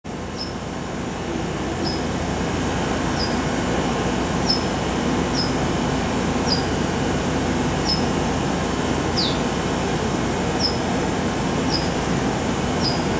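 Steady hum of a JR West 225 Series electric train standing at the platform with its doors open, its onboard equipment running while it waits to depart. A short high chirp repeats about once a second over it, one of them longer and falling.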